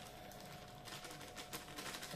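Faint rustling and crinkling of a plastic flour packet being handled, with a few light ticks.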